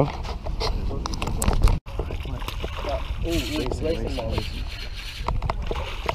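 Water sloshing and splashing around a small boat over a steady low rumble, with scattered small clicks. The sound cuts out abruptly just before two seconds in, and a faint voice comes in briefly about three seconds in.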